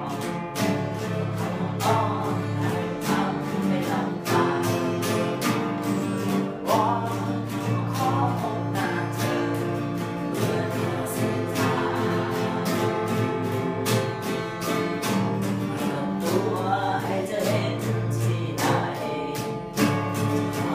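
Two acoustic guitars strummed in a steady rhythm while a boy and a girl sing a Thai song together.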